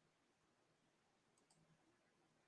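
Near silence: the live-stream audio sits far below any audible level, with only two barely-there ticks about one and a half seconds in.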